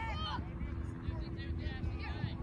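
Distant shouting voices of players and spectators across an outdoor soccer field, a short call at the start and another near the end, over a steady low rumble.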